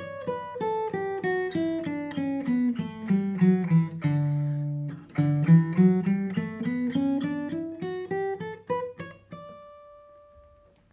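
Furch Yellow Masters Choice steel-string acoustic guitar played fingerstyle: single picked notes run down the D major scale, about four a second, to a low note held about four seconds in, then climb back up. The last note is left ringing near the end.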